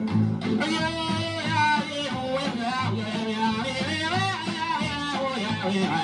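Novelty pop record playing on a turntable: a wordless vocal line wavers up and down in pitch over guitar and bass backing.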